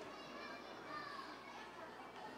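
Faint, indistinct chatter of many people talking at once as several small groups hold their discussions.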